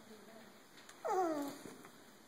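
One short vocal cry about a second in, sliding down in pitch over about half a second, over quiet room tone.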